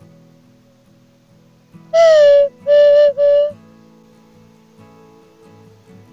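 Hand-made wooden bird call (pio) blown in three loud whistled notes: a first one of about half a second that slides slightly down onto its pitch, then two shorter steady notes. Soft background guitar music runs underneath.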